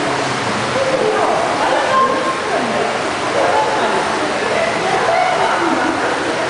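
Indoor swimming pool: many children's and adults' voices chattering over one another without a break, mixed with water splashing and sloshing around the swimmers.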